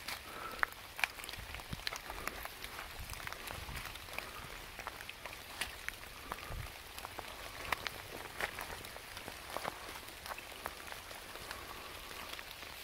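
Rain falling on wet leaf litter in woodland: a steady hiss with many scattered sharp drip ticks, and a few soft low thuds.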